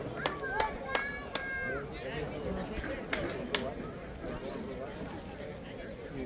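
Background voices of several people talking at a distance. In the first two seconds there is a run of sharp slaps along with a few short high squeaks, and two more slaps come about three seconds in.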